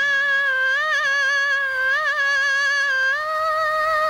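Woman's voice humming a wordless melody in an old Tamil film song, with little accompaniment: long held notes with small ornamental wavers, stepping up to a higher note about three seconds in.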